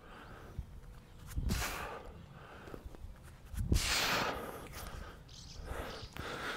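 A man breathing out heavily through his mouth as he works through a dumbbell windmill exercise, one breathy rush about every two seconds, with a faint steady background between breaths.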